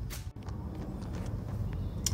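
Faint background noise with a few light clicks, broken by a sudden brief dropout about a third of a second in.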